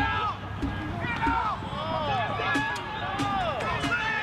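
Several voices shouting and calling out over one another, with no clear words, against a background of crowd noise.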